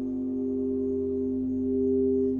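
Frosted crystal singing bowls played by circling wands around their rims, holding two steady, overlapping tones, one lower and one higher, with a slight wavering beat between them.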